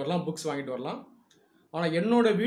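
Only speech: a man talking, breaking off for a short pause about halfway through before going on.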